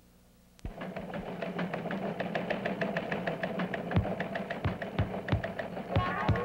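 Rapid, even mechanical clicking, about seven clicks a second, over a steady low hum. It starts suddenly about half a second in, with a few deeper knocks near the end.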